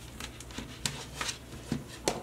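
Hands handling strands of nylon 550 paracord on a collar: soft rustling with several light, short clicks and ticks.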